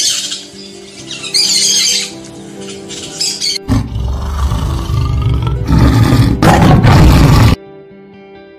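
Short bursts of bird calls over background music, then a tiger roaring from about halfway. The roar is the loudest sound and cuts off abruptly near the end.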